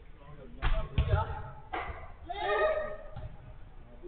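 A football being kicked: three sharp thuds in the first two seconds, then a player shouting.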